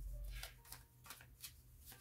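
Tarot deck being shuffled by hand: faint soft card shuffling with a few light clicks.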